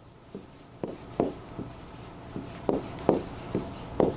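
A pen or stylus writing on a large interactive display board: a run of light taps and short scratching strokes as the characters are drawn, irregularly spaced.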